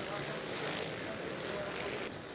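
A pack of enduro motorcycles running as the riders pull away from the start line, heard as a steady, muffled din through the onboard camera's microphone.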